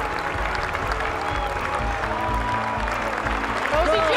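Golf gallery applauding over background music with a steady low beat.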